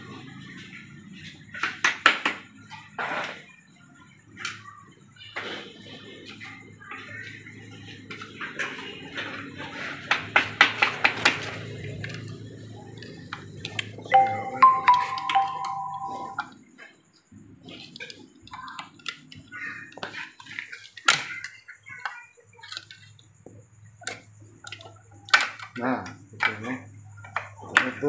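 Hand tools clicking and clinking against an aluminium automatic transmission case as the inhibitor switch and its bolts are worked loose, with a quick run of clicks about ten seconds in. A steady two-note electronic chime sounds for about two seconds midway.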